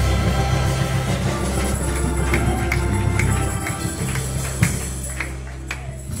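Church instrumental music with a steady low bass playing out the end of a children's choir song and slowly fading. A run of short, sharp hits sounds in its second half.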